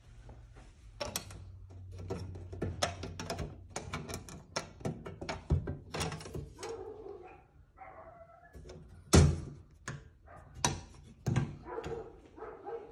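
A dog barking off and on in short sharp barks, mixed with knocks and thumps; the loudest sound is a single sharp hit about nine seconds in.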